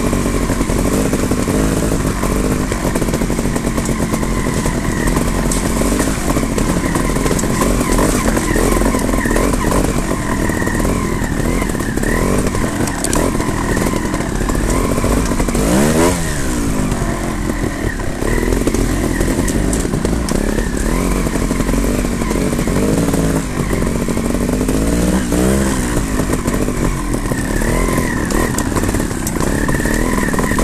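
Trials motorcycle engines running at low speed on a snowy trail, the revs rising and falling with the throttle, with sharp blips about halfway through and again some ten seconds later.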